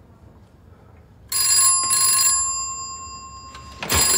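An old desk telephone's bell ringing: a double ring starting just over a second in, its tone ringing on and fading, then another ring starting near the end.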